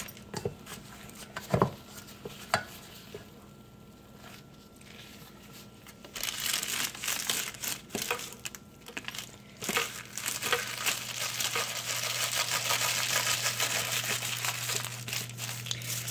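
Parchment paper crinkling as it is rolled tightly around a log of sausage mixture by gloved hands. The first few seconds hold only a few light taps, then the crinkling runs on steadily from about six seconds in.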